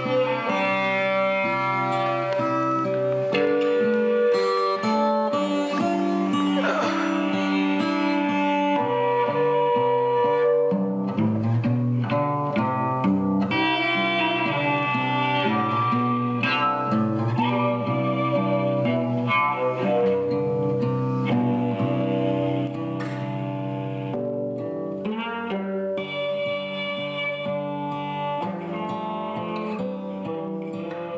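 Instrumental music with string instruments, sustained bowed notes over plucked ones, getting a little quieter about three-quarters of the way through.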